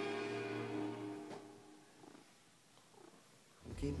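Held music chords fading out over the first second and a half, leaving a faint stretch in which a house cat purrs close to the microphone. Louder music and a voice cut back in near the end.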